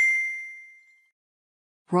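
A single bright, bell-like ding from an editing sound effect, struck once and fading away over about a second, then silence. A synthesized narrator's voice starts right at the end.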